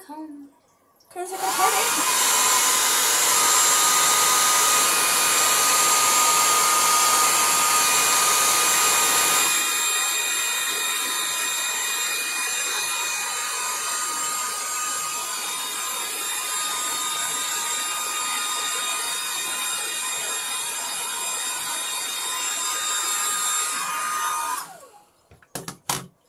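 Handheld hair dryer switched on, running with a steady rush of air and a high motor whine. It drops to a lower level about ten seconds in and is switched off shortly before the end.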